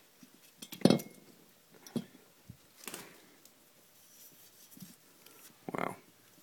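The two-stroke cylinder barrel of a Yamaha PW50 is handled and turned over on a concrete floor, giving a few sharp metal knocks and clinks. The loudest knock comes about a second in, then a few lighter ones follow.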